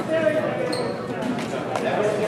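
Indistinct voices talking in a school gymnasium, with occasional thuds.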